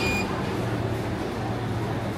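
Self-serve frozen yogurt machine: a short high beep right at the start as the dispensing handle is pulled, then the machine running with a steady low hum while soft-serve fills a cup.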